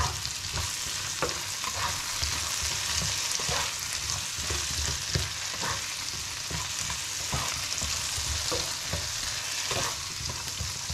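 Diced potatoes frying in butter in a pan with a steady sizzle, while a spatula stirs them, scraping and knocking against the pan about once or twice a second.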